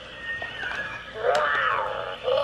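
FurReal Munchin' Rex animatronic baby dinosaur toy making its electronic dinosaur calls: warbling, squealing cries that glide up and down in pitch, growing louder about halfway through.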